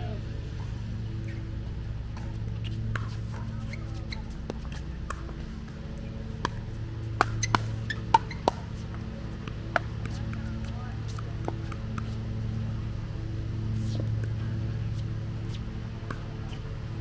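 Pickleball paddles hitting a plastic pickleball in a quick rally: about six sharp pops between about six and ten seconds in, over a steady low hum.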